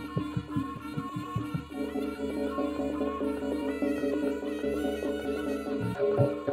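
Live jaranan ensemble music: a reedy wind melody over drums and gongs. A fast, even drumbeat of about five strokes a second drops out about two seconds in, leaving the held melody tones.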